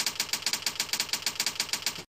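A rapid, even train of mechanical-sounding clicks, about ten a second, like a ratchet or typing sound effect in an animated intro. It stops abruptly at the end.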